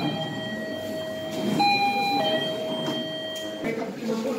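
Electronic two-tone siren switching between a higher and a lower pitch, holding the lower note longer, twice over, over background noise.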